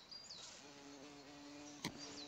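Faint steady buzz of a flying insect that starts about half a second in, over a bird repeating short, high chirping notes; a single sharp click near the end.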